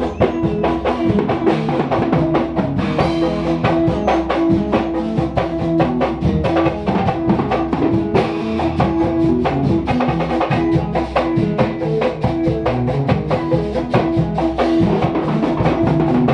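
A band playing live in a small room: a drum kit keeps a rapid, steady beat under amplified electric guitar and held bass notes.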